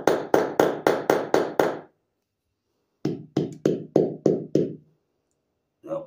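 Hammer tapping a ball bearing into a lawn mower wheel hub: quick, even strikes about four a second, in two runs of about seven with a second's pause between. The bearing is binding and going in on one side but not the other.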